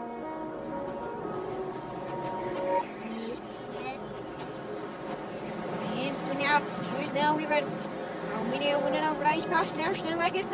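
Film score played backwards, sustained notes that cut off sharply about three seconds in, then voices speaking backwards from about six seconds in.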